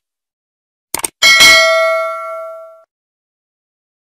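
Subscribe-button sound effect: a quick double click about a second in, then a single bell ding that rings out and fades over about a second and a half.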